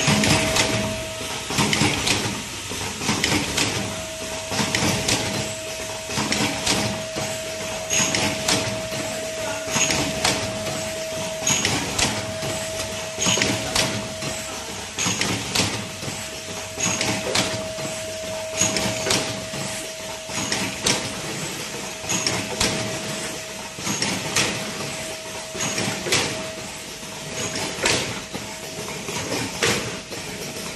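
Automatic vertical cartoning machine running: continuous mechanical clacking and knocking from its moving parts, with a sharp click about every two seconds as it cycles, over a steady hum that drops out now and then.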